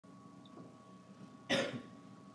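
Quiet room tone with a faint steady hum, then a single short, sharp cough about one and a half seconds in.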